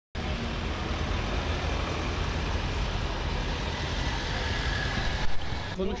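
Steady outdoor street noise: a continuous low rumble and hiss of road traffic. It changes abruptly about five seconds in, just before a man starts talking.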